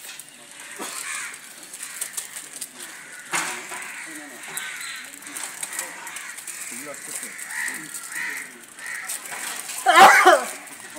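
Low voices of people talking in the background, with birds calling now and then and a single sharp knock a little over three seconds in.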